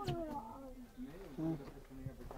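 A small child's wordless voice, sounds whose pitch slides up and down.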